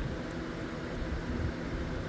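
Steady low background hum with no distinct event, the kind of room noise a running fan or air conditioner makes.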